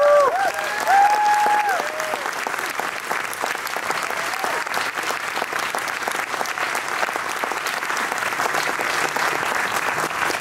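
Audience applauding steadily, with a few cheers rising over the clapping in the first two seconds.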